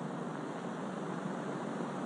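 Steady, even hiss: the background noise of an old optical film soundtrack, heard between lines of narration.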